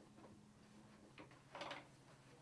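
Near silence: quiet room tone, with one brief soft noise about one and a half seconds in.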